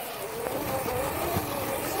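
Razor E100 Glow electric scooter's motor whining as it rides off across grass, its pitch wavering slightly and growing louder, over low rumble.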